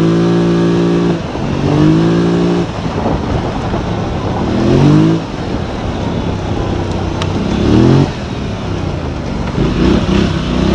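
Off-road vehicle's engine revving up again and again as the throttle is opened: about five rising sweeps in pitch, each ending abruptly after a second or so, over a steady rush of wind and tyre noise on a dirt trail.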